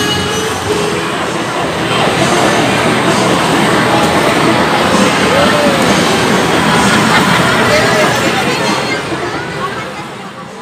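Busy amusement-arcade din: a dense, steady wash of game-machine noise mixed with overlapping crowd chatter, fading near the end.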